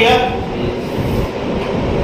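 A man's voice ends a word at the very start, then a steady, low rumble of background noise with no clear tone fills the rest.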